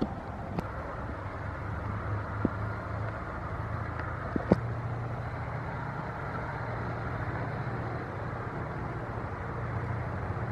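Low, steady drone of an approaching cargo coaster's diesel engine, slowly growing louder, with a few short sharp clicks in the first half.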